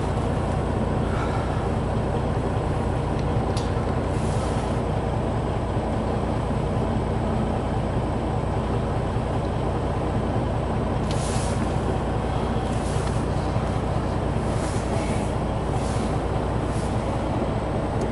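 Semi truck's diesel engine running steadily, heard from inside the cab as a constant low rumble while the truck rolls slowly. A few brief hiss-like noises sound over it.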